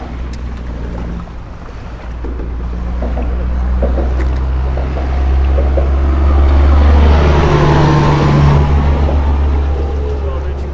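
A motor running with a steady low rumble. It swells louder through the middle, peaks with a rising hiss a little past halfway, then eases off near the end.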